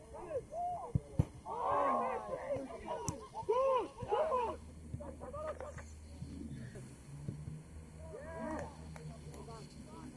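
Players' calls and shouts across an open training pitch, short and overlapping, busiest in the first half. A few sharp thuds of a football being struck cut through about a second in and again about three seconds in.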